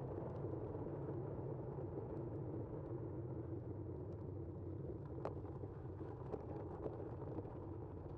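Steady wind and road noise of a bicycle being ridden along a road, with car traffic passing. A few light clicks come in the second half.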